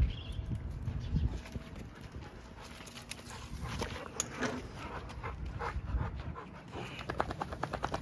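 Bully-breed dogs moving about on bare dirt close to the microphone: scattered scuffs and clicks, with a quick run of rapid clicks near the end.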